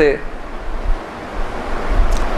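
Steady rushing background noise in a pause of a man's talk, with the end of a spoken word at the very start.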